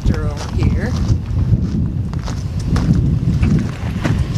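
Wind buffeting the microphone: a loud, uneven low rumble. A voice is heard briefly at the start.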